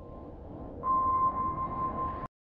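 A steady, high electronic tone over a low rumbling drone. About a second in, the tone jumps louder and the rumble swells.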